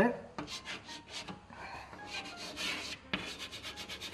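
Chalk scratching on a blackboard as a word is written, a run of short strokes.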